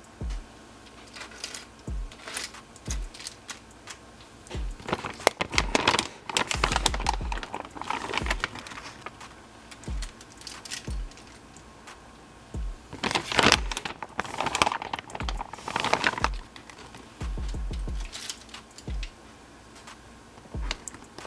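Aluminium foil lining a sheet pan crinkling and rustling in irregular bursts as pieces of raw chicken are laid on it by hand, with short dull bumps now and then.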